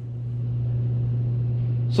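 A steady low hum with a faint hiss over it, swelling slightly in the first half second, then holding level.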